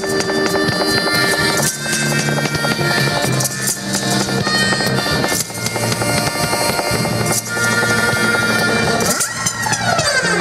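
Live music with a reedy harmonica lead playing long held notes over the backing. Near the end, a swirl of tones slides up and down.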